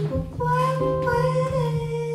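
Female jazz voice singing a long held note, with a slight bend in pitch, over chords on a hollow-body archtop electric guitar.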